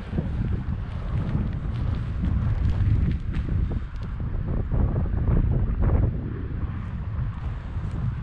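Wind buffeting the camera microphone: a low, uneven rumble that swells and eases.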